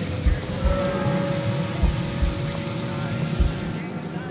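Tap water running into a sink with a steady hiss that cuts off sharply just before the end, under a soundtrack of deep thuds at uneven intervals and a faint held tone.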